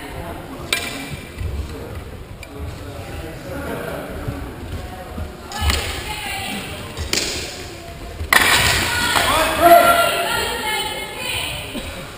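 Sword-and-buckler fencing bout: a few sharp knocks of weapons striking, about a second in and again around six and seven seconds. In the last four seconds voices are loud, with shouting in the hall.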